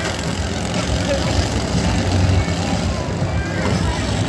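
Several riding lawn mower engines running at once as the mowers drive around and jostle in a demolition derby, with voices from the crowd mixed in.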